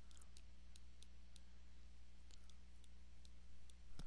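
Faint, irregular small clicks and taps of a pen stylus writing on a tablet screen, about three a second, over a steady low electrical hum.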